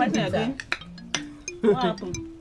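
Tableware clinking in quick sharp clicks over background music with held notes, with two brief vocal sounds, one at the start and one near the end.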